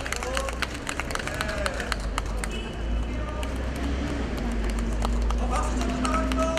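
Scattered hand-clapping from a small outdoor audience that sounds weak, partly drowned by a steady low rumble of road traffic.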